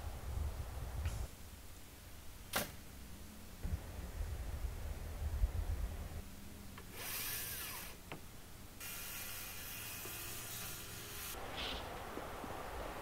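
Power drill running in two bursts: a short one about seven seconds in, then a longer, steadier one of about two and a half seconds. A single sharp click comes earlier.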